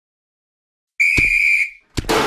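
A single whistle blast, like a referee's whistle, as a sound effect. It lasts about two-thirds of a second, starts about halfway through after silence, and has a low thump at its onset. A sharp hit comes right at the end.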